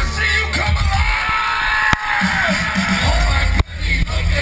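Loud live concert music over a PA, heard from inside the crowd, with heavy bass. The sound cuts out briefly about two seconds in and again near the end.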